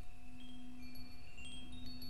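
Wind chimes tinkling: scattered single high notes ring out at odd moments over a steady low hum.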